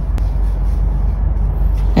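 Steady low background rumble, with one sharp click shortly after the start.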